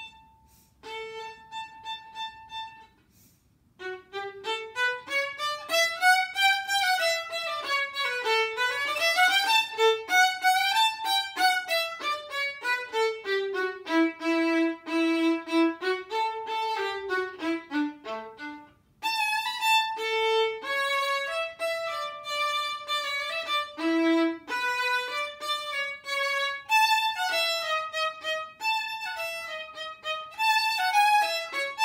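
Solo violin playing a melody in fast runs of short notes that climb and fall, with brief breaks between phrases.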